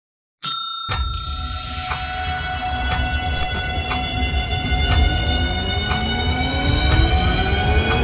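Dramatic intro music under a countdown: a sharp hit about half a second in, then a tick about once a second over a low rumbling drone and held high tones, with rising glides building toward the end.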